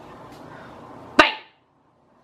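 A single sudden, sharp bang about a second in, made as a storybook sound effect as the word 'Bang!' is called out; it dies away within about a third of a second.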